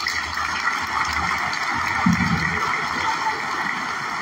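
Audience applause: many people clapping steadily.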